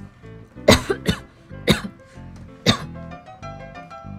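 A woman coughing close to the microphone, four short, loud coughs in under three seconds, over steady background music.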